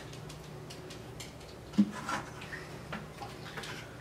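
A plastic bucket is handled and emptied into a top-loading washing machine, giving light knocks and clicks with one sharp knock a little before halfway, over a low steady hum.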